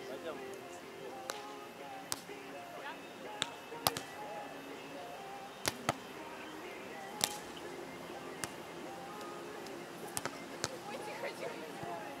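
A volleyball being struck by hands and forearms during a rally on a sand court: about a dozen short, sharp smacks at irregular intervals, the loudest about four and seven seconds in.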